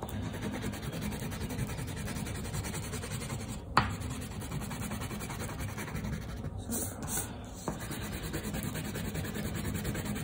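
Blue crayon rubbing back and forth on a sheet of paper lying on a wooden table, a steady scratchy scribbling, with one sharp click a little under four seconds in.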